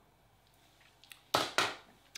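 Room tone for just over a second, then two short, sharp noises close to the microphone, about a quarter second apart.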